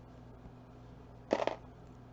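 A faint low steady hum, with one short clatter of small metal costume-jewelry pieces handled over a table about a second and a half in.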